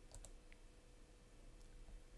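Near silence: room tone with a faint steady hum and a few faint clicks near the start.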